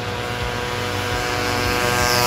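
Yamaha F1ZR's ported two-stroke engine running hard as the bike is ridden toward the camera, its buzzing note growing steadily louder as it approaches.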